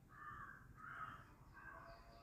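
A bird calling faintly in the background, three short calls in quick succession, over near-silent room tone.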